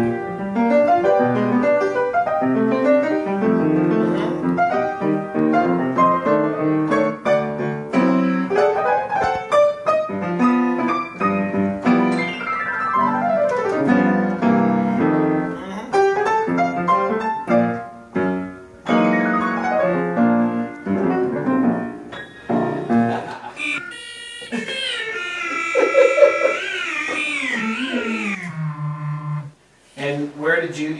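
Upright piano played: fast runs and chords. Near the end it gives way to held tones that slide and waver, falling in pitch to a low note.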